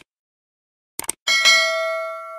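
Subscribe-button animation sound effect: a short click about a second in, then a notification bell chime that rings out and slowly fades.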